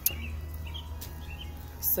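A small bird chirps several times in short, faint calls over a steady low rumble.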